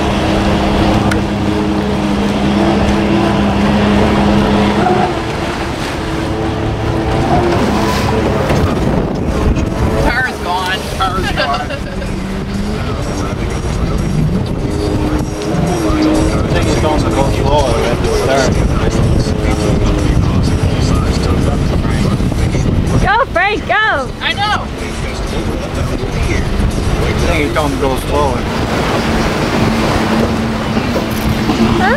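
Boat engine drone with wind and water noise on the move. Indistinct voices come and go over it, with a burst of excited, raised voices about two-thirds of the way through.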